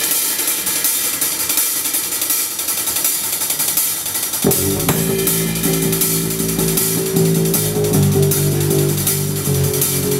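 Live rock band: the drum kit plays alone at first, mostly cymbals and hi-hat. About four and a half seconds in, the electric guitars come in with a sustained riff, and the band plays on together.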